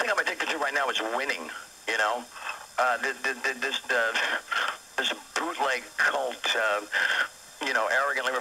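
A man's speech from a broadcast, coming through a small portable radio's speaker, thin and tinny with no bass.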